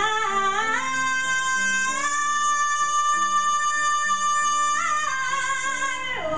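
A woman singing one long, high note with piano accompaniment. The note climbs in steps over the first two seconds, is held steady, then falls away about five seconds in, while the piano sustains chords underneath.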